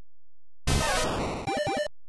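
A magical transformation sound effect: after a moment of near silence, a dense, jangling swirl of electronic tones starts about two-thirds of a second in. It sweeps downward and then rises in quick glides, and it stops after about a second and a quarter.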